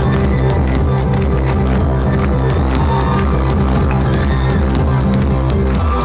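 Live pop-rock band playing loudly through a festival PA, with a steady drum beat and heavy, repeating bass notes.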